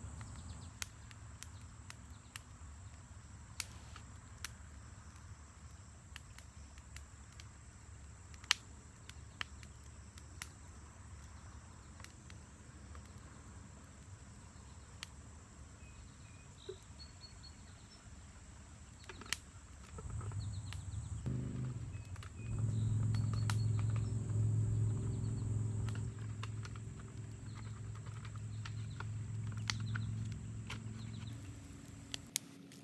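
Campfire crackling with scattered sharp pops and clicks over a faint outdoor background. About twenty seconds in, a low steady hum comes in and grows louder, becoming the loudest sound near the end.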